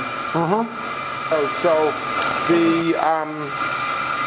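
Steady machine hum with a high, even whine from the running wood-chip boiler plant, under short bits of speech.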